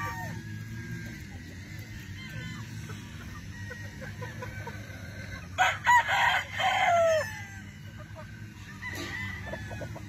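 A gamecock crowing once, a little past halfway: a loud crow of about a second and a half that ends on a falling note. Hens cluck and chirp softly throughout.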